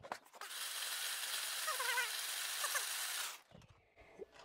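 Loose LEGO pieces rattling against each other and the plastic walls of a stack of 3D-printed sorting trays as the stack is shaken to sift the small pieces down through the screens. The rattle runs steadily for about three seconds and stops shortly before the end.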